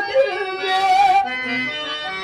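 A man singing a long, wavering held note of a Telugu stage-drama verse, accompanied by a harmonium that holds steady lower notes in the second half.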